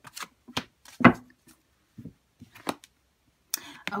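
A deck of Romance Angels oracle cards being shuffled by hand: a string of short, sharp card snaps and slaps, the loudest about a second in, with a brief rustle of cards near the end.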